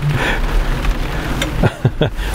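Rain pattering on the roof and windows of a rally car, heard from inside the cabin as an even hiss over a low rumble.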